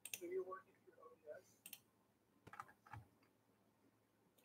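Near silence with a few faint, scattered clicks from a computer keyboard and mouse, and a faint murmur of a voice in the first half second.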